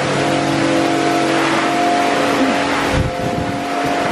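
Metal shopping trolley rolling over brick paving, its wheels and wire basket rattling in a loud, steady clatter, with a few bumps about three seconds in.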